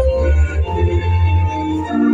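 Church choir singing a Methodist hymn in harmony with organ accompaniment, holding long steady notes over a deep bass, the chord changing about every second.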